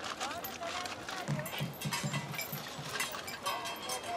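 Street-market sound: crackling of a paper bag of oranges being handled, over background voices. About a second in comes a quick run of dull low knocks, about four a second.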